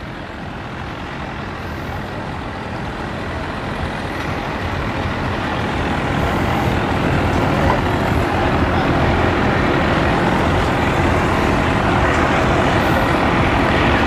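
Two-stroke outboard boat motor running at low speed, growing steadily louder as the boat draws closer.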